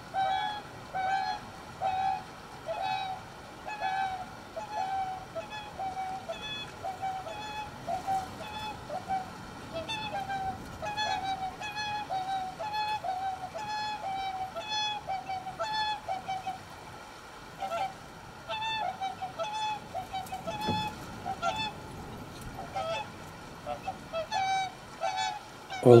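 Whooper swans calling: a long run of bugling honks, one or two a second and often overlapping from several birds. It is the sound of the adult pair driving last year's young off their territory.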